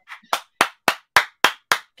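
One person clapping hands in applause, a steady run of about eight claps at roughly three to four a second.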